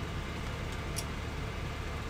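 Steady low hum and hiss of room background noise, with one faint click about a second in.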